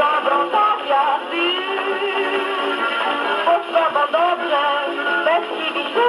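A 1930s dance orchestra playing a foxtrot from a worn 78 rpm shellac record on a portable wind-up gramophone. The sound is thin and has almost no bass.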